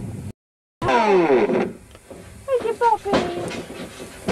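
Men's voices yelling without clear words: one long cry falling in pitch about a second in, then a few short exclamations. The sound cuts out completely for about half a second just after the start.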